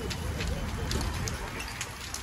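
A fully involved RV fire burning: a steady low rumble of flames with scattered sharp crackles from burning debris.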